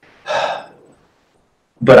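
A man's quick, audible breath through the mouth, about half a second long, a quarter second in; near the end he starts speaking.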